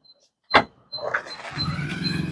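Car tailgate latch releasing with a single click about half a second in, then a rising sound that settles into a steady low hum as the boot lid swings open.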